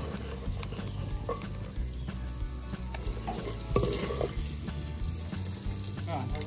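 Chopped onion and green bell pepper sizzling as they fry in pork lard in an aluminium pot, stirred with a wooden spoon that knocks against the pot now and then.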